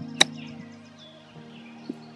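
A single crisp click of a golf wedge striking the ball on a short pitch shot, a fraction of a second in.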